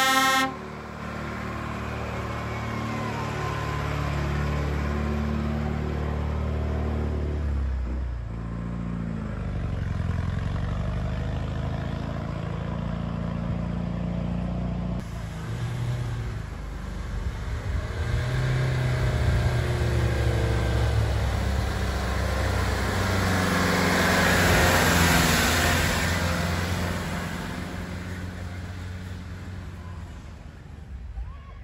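A vehicle horn sounds and stops about half a second in; then motor vehicle engines run under load as they climb a steep dirt road, the pitch rising and falling, loudest about three-quarters of the way through and fading toward the end.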